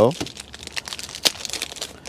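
Thin clear plastic wrapping around a wiper blade crinkling as it is pulled open by hand, a dense run of irregular crackles.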